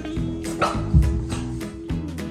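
Guitar background music, with a French bulldog giving one short bark about half a second in during rough play-wrestling.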